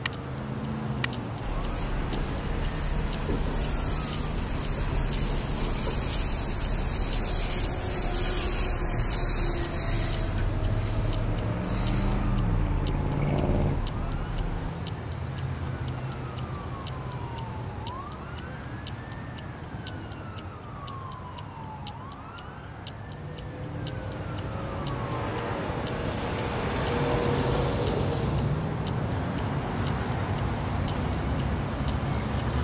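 Emergency-vehicle siren wailing in slow rising and falling sweeps a few seconds apart, over steady clock-like ticking and a low rumble.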